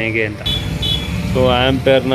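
A man talking, over a steady low hum, with two short high beeps in a pause in his speech.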